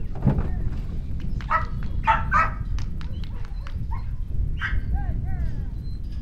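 Australian cattle dog barking at cattle: a few short barks between about one and a half and two and a half seconds in, another near five seconds, then some brief rising-and-falling yelps.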